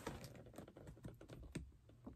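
Faint light taps and scuffs of fingers on a cardboard box as it is gripped and tilted.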